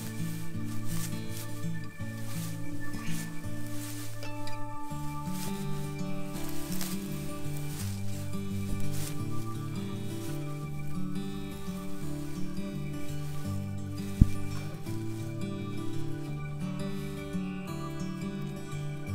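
Soft background music of held chords that change every second or so, over the rustle of grass being pulled apart by hand, with one sharp thump about fourteen seconds in.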